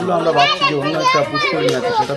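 Many overlapping voices, children's among them, calling out and chattering excitedly all at once.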